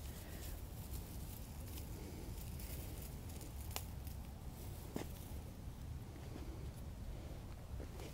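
Faint sounds of gloved hands pulling bindweed out of a clump of ornamental onion, with a couple of small clicks about halfway through, over a low steady rumble.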